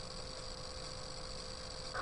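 Quiet room tone: a steady low hiss with a faint, even hum underneath, and no other sound.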